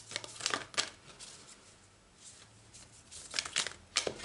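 A deck of cards being shuffled by hand: two short spells of papery riffling, one about a quarter-second in and one a little before the end.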